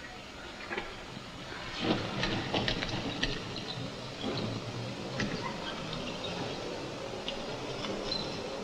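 Wheelchair wheels rolling over pavement, with irregular clicks and rattles over a steady hiss.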